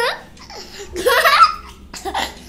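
A young child laughing: one short burst of high-pitched laughter about a second in.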